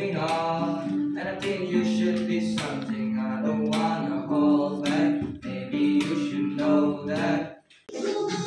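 Acoustic guitar strummed while a boy sings along, holding long notes. The song breaks off suddenly near the end.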